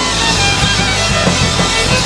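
A rock band playing live in an instrumental passage: electric guitar, bass guitar, drum kit and bowed violin together at a steady, driving beat.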